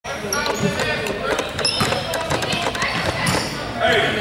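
A basketball bouncing on a hardwood gym floor, several thuds in a row, with people talking over it.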